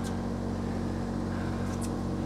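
Boat engine idling with a steady low hum.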